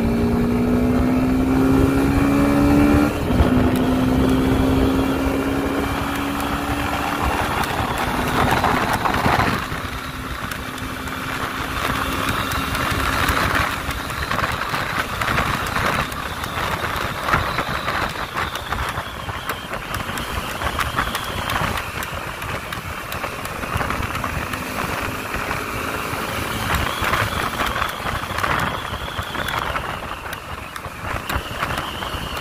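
Suzuki Gixxer SF 250's single-cylinder engine pulling hard from a standstill, its pitch climbing, dipping at an upshift about three seconds in, then climbing again. From about nine seconds on a steady rush of wind over the microphone at speed drowns out most of the engine.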